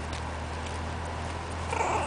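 Four-week-old miniature pinscher puppies play-wrestling, with faint scuffling and a short, rough puppy vocalisation near the end.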